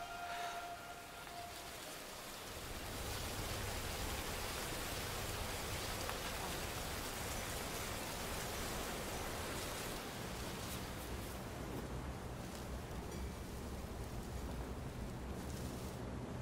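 A steady, even hiss of noise like rain or wind, joined by a low rumble about two and a half seconds in, after the last notes of music fade out in the first second.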